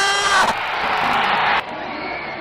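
Stadium crowd noise from football spectators, with one long held shout over it in the first half second; the crowd sound cuts off suddenly about a second and a half in.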